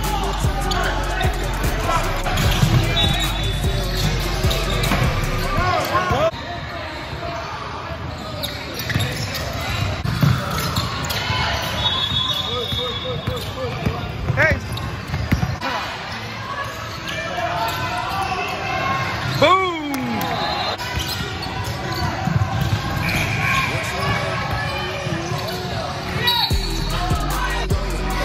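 Live basketball game sound in a gym: a ball bouncing on the court amid players' and spectators' voices. Background music plays over the first several seconds, drops out, and comes back near the end.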